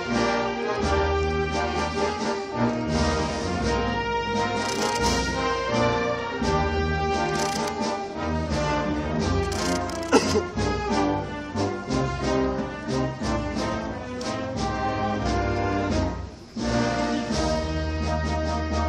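A brass and wind band playing a processional march: held brass chords over a low bass line. There is one sharp hit about ten seconds in, and a brief break in the sound about sixteen seconds in.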